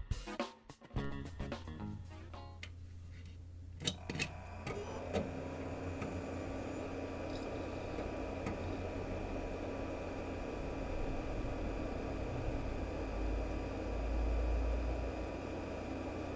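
Background music for the first couple of seconds, then a couple of clicks and the steady whir of a small notebook blower fan, freshly fitted to a graphics card heatsink and now spinning, with the low hum of the running PC under it.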